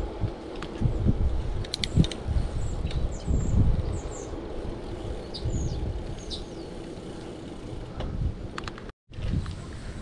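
Wind noise on the microphone and road rumble from a bicycle being ridden, with a few short, high bird chirps in the middle and a couple of sharp clicks about two seconds in. The sound drops out for a moment near the end.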